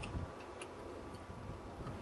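Wind buffeting the microphone as an uneven low rumble, with a few faint sharp ticks scattered through it.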